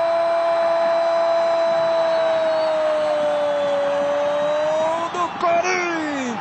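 Football commentator's long drawn-out "goooool" cry announcing a goal, one held note that sags slightly and lifts again before breaking off into excited talk about five seconds in.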